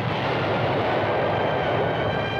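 Steady, dense roar of battle sound effects on an old film soundtrack.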